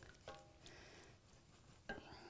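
Near silence: room tone, with a faint brief tone about a quarter second in and a soft click near the end.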